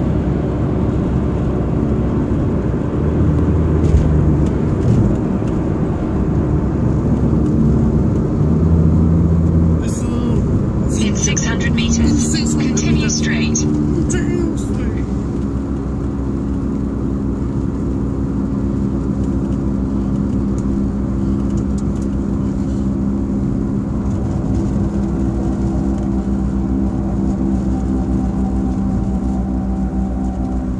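Steady low rumble of a car's engine and road noise heard inside the cabin while driving, with a person's voice over it.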